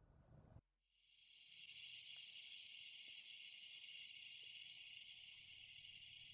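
Near silence, with a faint steady high-pitched hiss of an insect chorus that comes in about half a second in.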